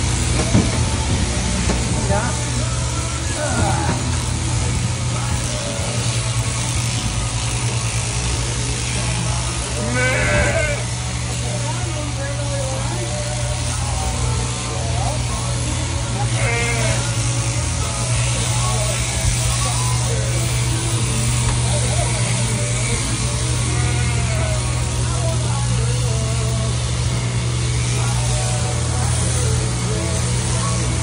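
Overhead-drive sheep-shearing machine running steadily as its handpiece cuts through a ram's fleece, with a low hum throughout. A sheep bleats several times, most clearly about a third of the way in, again just past halfway and again about four-fifths of the way in.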